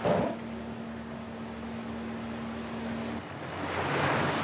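A research ship's machinery running with a steady hum on one tone, over a low wash of noise. The hum stops about three seconds in and a hissing noise swells up.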